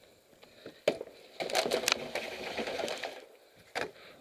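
Quick footsteps scuffing over a dry, leaf-covered dirt trail with clattering of carried gear, densest in the middle, with a sharp knock about a second in and another near the end.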